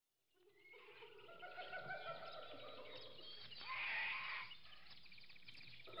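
Faint zoo ambience fading in after a moment of silence: a mix of overlapping animal calls, with a louder call about four seconds in.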